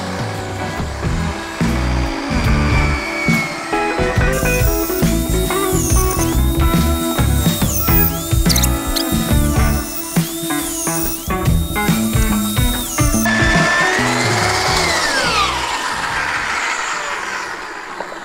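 Mafell portable carpenter's band saw running through a timber beam, its worn blade clacking, a sign it is close to tearing. Background music plays over it from about four seconds in until about thirteen seconds.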